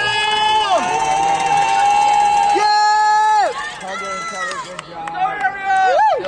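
Spectators shouting long drawn-out calls of support, several voices overlapping. Each call is held at a steady high pitch for a second or more and drops off at the end. Crowd chatter runs underneath.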